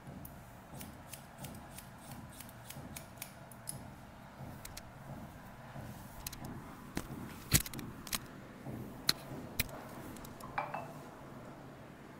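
Hairdressing scissors snipping through wet hair: a quick run of light snips in the first few seconds, then a few louder, sharper snips later on.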